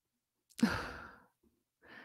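A woman's audible sigh, a breathy exhale without voice that starts about half a second in and fades away over roughly half a second.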